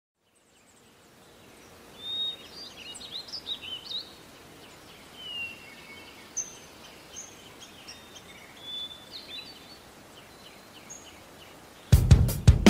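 Songbirds chirping over a soft outdoor hiss, fading in from silence in the first second or two, as a recorded ambience between songs; a loud drum kit comes in right at the very end.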